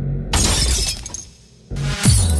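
Electronic intro sting: a low bass tone, then a sudden crash of breaking glass about a third of a second in that fades away over about a second, followed by a swell rising into the next hit near the end.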